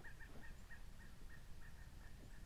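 A distant bird calling faintly: a steady series of short notes at one pitch, about three or four a second.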